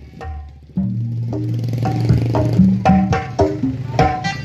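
Sundanese kendang pencak ensemble playing: kendang hand drums struck in quick sharp patterns over a sustained low tone and a pitched melody line. The music comes in fully about a second in.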